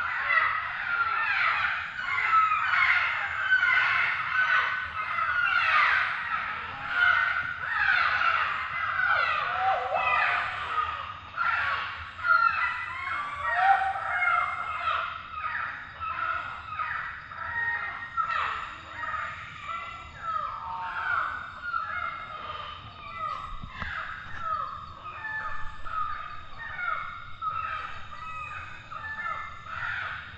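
A chorus of tropical forest birds, many calling at once in short, overlapping, mostly falling notes, a little weaker in the second half.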